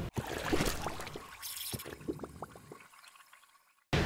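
Liquid dripping and trickling: a scatter of short rising plinks that thin out and fade. It cuts to dead silence for about a second near the end.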